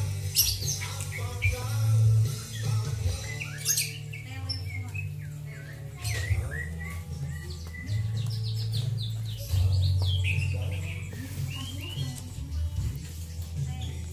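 Background music with a steady bass line, over caged songbirds chirping and calling in short rising and falling notes throughout.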